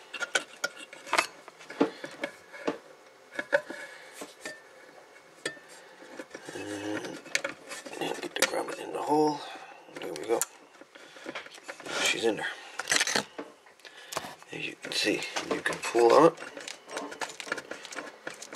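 Handling noise: scattered light clicks, scrapes and knocks of wires and a bench power supply's sheet-metal chassis as the wires are pushed through the grommet hole in its back panel.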